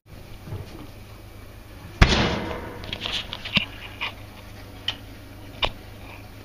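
An oven door shut with a loud bang about two seconds in, then several sharp clicks and taps as the oven's control knob is handled.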